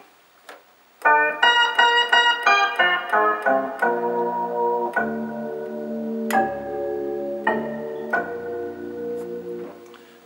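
Roland D-20 synthesizer being played: a quick run of single notes starting about a second in, then sustained chords that change every second or so.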